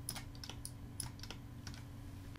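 Faint, irregular clicking of a computer mouse and keyboard, several clicks spread across the two seconds, over a steady low hum.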